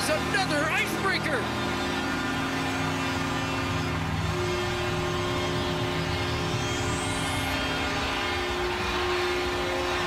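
Arena goal horn sounding in long held tones, signalling a goal, over steady arena noise; the horn's pitch shifts about four seconds in.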